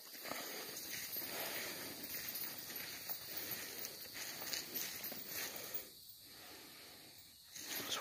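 Footsteps and rustling undergrowth of someone walking along a woodland path, an uneven scuffing that dies away about six seconds in.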